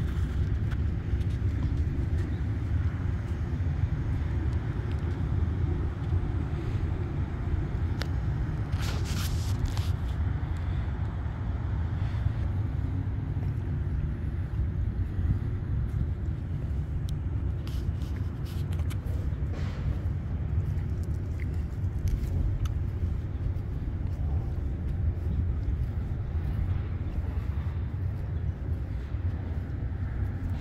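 Steady low outdoor rumble with no clear single source, with a few faint brief clicks around nine seconds in and again near twenty seconds.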